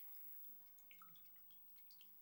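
A few faint drips and light clicks from a glass of orange juice and water being handled by hand, scattered through the quiet, the loudest about a second in.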